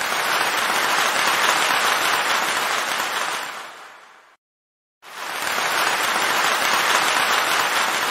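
Applause, in two swells that each rise and fade away smoothly, with a brief dead silence between them about four and a half seconds in.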